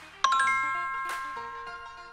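Closing logo sting: a bright bell-like chime struck about a quarter second in, ringing on and slowly fading, with soft whooshes around it.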